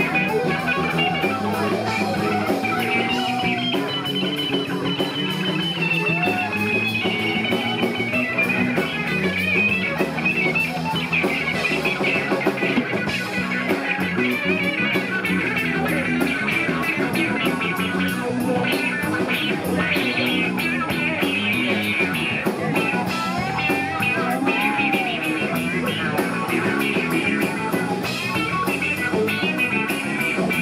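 Live rock band playing an instrumental stretch with no singing: electric guitars and drum kit, with a saxophone in the band.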